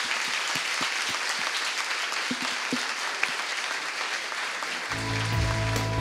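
Audience applauding. About five seconds in, music with steady held notes and a low bass starts under the fading applause.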